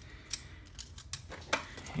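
A few light, separate clicks and taps of hard plastic hobby parts being handled on a workbench as a Mini 4WD car is set down and put aside.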